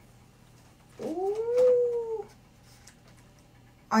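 A single drawn-out vocal call about a second long, rising in pitch, holding, then falling away.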